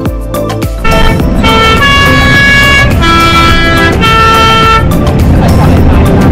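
A multi-tone vehicle horn, of the kind the Swiss PostBus sounds on alpine mountain roads, plays a sequence of long notes, each about a second, changing pitch. It comes in loudly about a second in, over background music with a steady beat.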